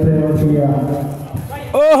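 A man's voice: a long, drawn-out call, then more speech near the end.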